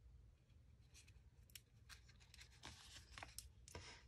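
Near silence with a few faint ticks and rustles of a paper sticker strip being peeled off its backing and handled.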